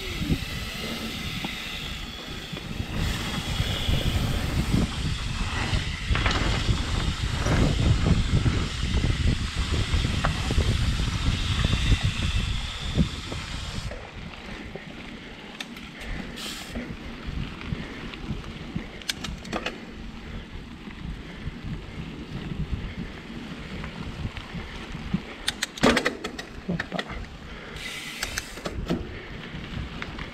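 Mountain bike riding noise: wind buffeting the camera microphone over tyres rolling on a dirt trail, with sharp rattles and clicks from the bike. The low wind rumble is heavy through the first half, then drops suddenly about halfway, leaving quieter rolling noise with scattered clicks.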